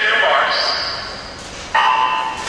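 Electronic starting signal of a swimming race: sudden, loud pitched tones that echo through an indoor pool hall, with one sounding at the start and fading over about a second and a half, and a second starting near the end.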